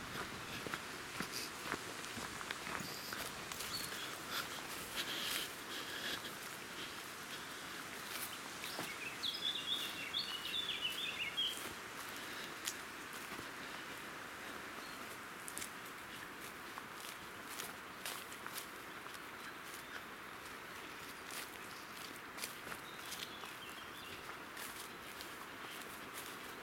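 Footsteps of a person walking outdoors, first on a gravel path, then softer on a grassy track, over a steady outdoor background. A bird calls briefly about ten seconds in.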